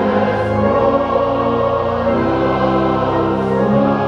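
Choir and congregation singing a gospel hymn together in long held chords. The chord changes about halfway through and again near the end.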